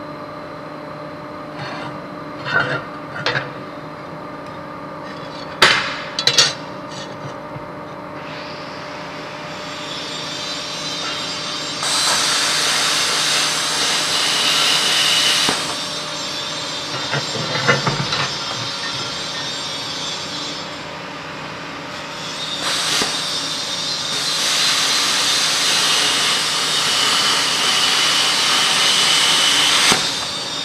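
Steel plate being cut with a handheld power cutting tool in two long passes: a steady high whine over a hiss from about 8 to 16 seconds in, and again from about 22 seconds on. A few sharp knocks of metal on metal come before the first pass, and there is clatter between the two passes.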